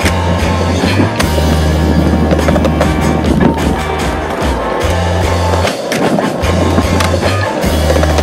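Skateboard wheels rolling on skatepark concrete, with sharp clacks of the board popping and landing. Music with held, changing bass notes plays over it.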